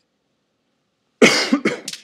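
A man coughing, three coughs in quick succession starting about a second in.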